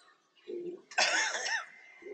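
A woman coughs once, sharply, about a second in, after a brief low sound from her voice just before.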